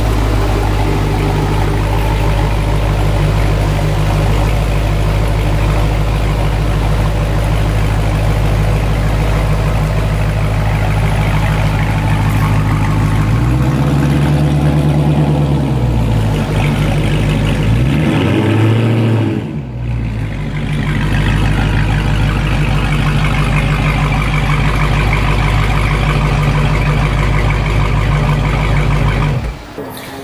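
Dodge Charger's 392 Hemi V8 running at low speed as the car is manoeuvred, a steady deep exhaust note. Twice around the middle it rises and falls in pitch under light throttle.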